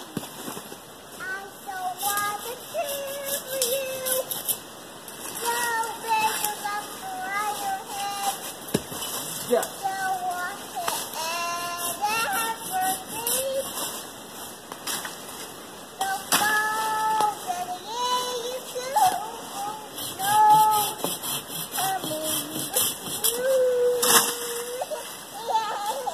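A young child singing and babbling without clear words, in long, gliding high notes, with scattered short crackles.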